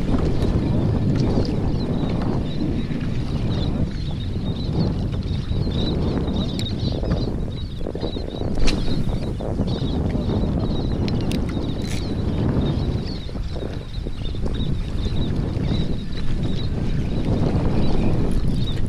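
Wind buffeting the microphone over the rumble of open-water chop against a kayak's hull, with a few sharp clicks from handling the rod and reel.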